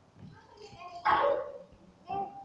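A person's short, loud exclamation about a second in, with fainter voices before it.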